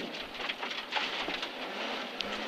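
Rally car running at speed on a gravel stage, heard from inside the cabin: a steady rush of tyres on loose gravel with stones crackling and pattering against the underside.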